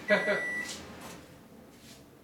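Microwave oven's end-of-cycle beep: a steady high electronic tone that stops under a second in, over a brief voice. The oven has finished its run. Low room tone follows.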